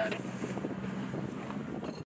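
Engine of a small rescue boat running with a steady low drone, with wind rushing over the microphone.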